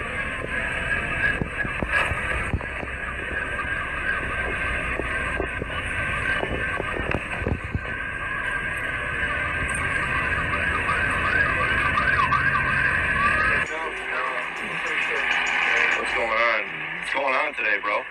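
Muffled voices over a steady rumble. The rumble drops away about 14 seconds in, and voices carry on after it.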